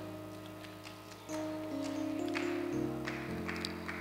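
Soft background music of sustained chords on a keyboard, moving to a new chord every second or so.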